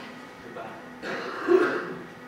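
A person's voice: one short vocal sound about a second in, lasting under a second, over a faint steady hum.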